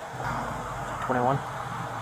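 A single short spoken word about a second in, over a steady low hum.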